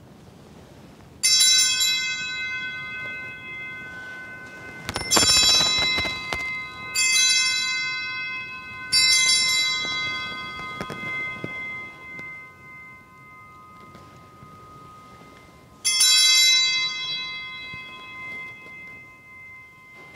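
Altar bell (Sanctus bell) rung five times, each ring fading over a few seconds, the last after a pause of several seconds: the bell that marks the consecration and elevation of the Host at Mass.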